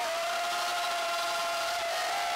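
A male worship singer holding one long high sung note into a microphone, steady in pitch and dipping slightly near the end.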